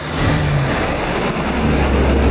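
A four-engine P-3 turboprop aircraft flying low past: loud, steady engine and propeller noise with a deep hum underneath, swelling up at the start.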